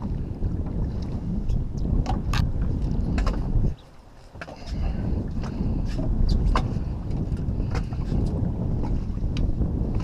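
Wind buffeting the microphone, a rough low rumble that drops away for under a second about four seconds in, with scattered light clicks over it.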